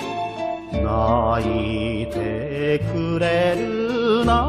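Music from an enka song recording: a melody with wavering vibrato over a steady bass accompaniment, with a brief lull about half a second in before the bass comes back in.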